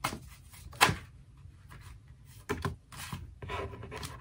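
A tarot deck shuffled by hand: cards rustling and snapping against each other in short strokes, the sharpest about a second in. Near the end a card is slid out and laid on the wooden table.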